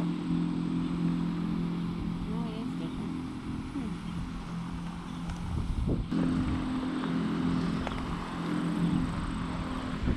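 A steady low mechanical hum from a running motor. It fades out about four seconds in and comes back about two seconds later.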